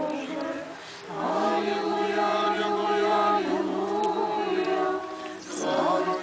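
A group of voices singing an a cappella Orthodox chant in long held notes, with short breaks for breath about a second in and again near the end.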